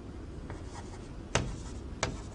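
Chalk tapping dots onto a blackboard: one sharp tap a little after halfway, with a fainter tap before it.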